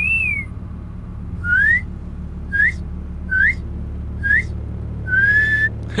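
A person whistling a short phrase: an arching note, then four quick upward-sliding whistles, then a longer held note near the end. Underneath runs the steady low rumble of a vehicle's interior.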